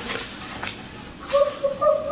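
A woman crying: a hissing, rustling stretch of breath, then a high, wavering wail that breaks up into whimpers about halfway through.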